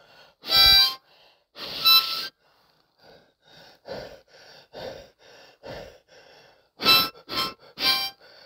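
Solo blues harmonica playing loud short blasts. In the middle comes a run of softer, breathy chugging notes, about two a second, before the loud blasts return near the end.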